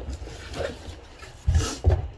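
Cardboard box being handled and lifted, with two short thuds and scrapes near the end.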